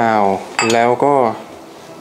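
A man speaking, with a brief light clink of small stainless steel bowls about half a second in as one bowl is tipped into another.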